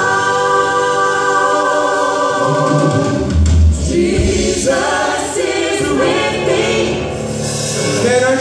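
Several voices singing a gospel song in harmony, holding one long chord for about three seconds before moving on through further sung lines. A deep low note sounds about three and a half seconds in.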